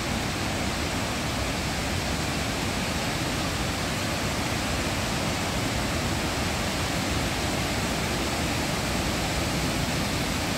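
Water pouring down a concrete dam spillway, a steady unbroken rush.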